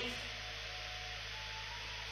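Quiet room tone: a steady hiss with a low electrical hum, and no distinct event.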